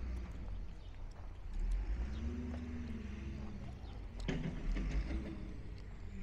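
Outdoor background with a steady low rumble, faint indistinct sounds in the middle, and a single sharp click about four seconds in.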